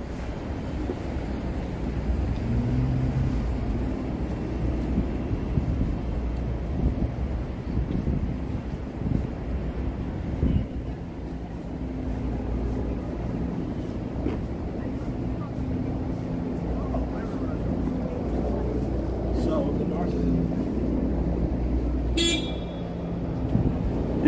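City avenue traffic: a steady rumble of passing cars and buses, with a short car horn toot about two seconds before the end.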